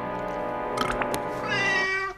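Cartoon cat giving a loud yowling meow that starts about one and a half seconds in, over held music chords, with a few light clicks just before.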